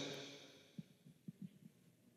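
Near silence: the room's echo of the last spoken words dies away in the first half second, followed by four faint, short low thumps about a second in.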